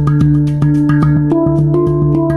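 Hang, the Swiss-made steel handpan, played live with the hands: quick, even strokes about five a second on its tone fields, ringing over a sustained low note. A higher set of notes comes in about a second and a half in.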